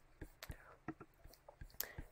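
Very quiet pause holding a handful of faint, short, scattered clicks, about seven of them spread unevenly through the two seconds.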